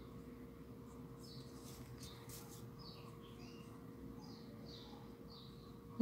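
Faint, repeated short high chirps, like small birds calling, over a low steady hum, with a few soft rustles of yarn being handled about two seconds in.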